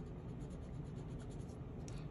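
Marker tip rubbing back and forth on a paper sheet as a shape is coloured in, a faint, steady scratching.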